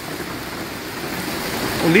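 Heavy rain falling steadily onto a flooded street, a continuous even hiss.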